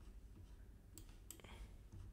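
Near silence: quiet room tone with a few faint computer mouse clicks, mostly in the second half.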